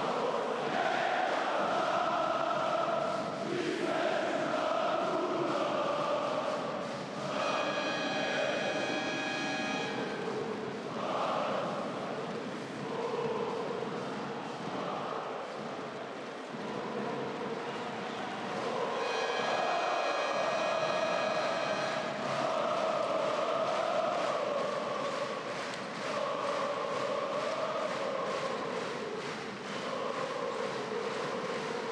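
A large arena crowd of basketball fans singing chants in unison, their massed voices rising and falling in waves. Twice a shrill steady tone sounds over the singing for two to three seconds.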